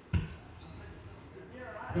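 A single dull thump just after the start, then low room sound until a man's voice begins to say 'thank' at the very end.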